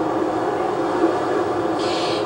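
A steady drone with several held tones and no breaks.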